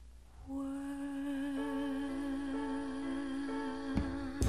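A woman's voice humming one long held note with vibrato over soft sustained accompaniment, beginning about half a second in and ending just before a sharp attack as the music comes back louder.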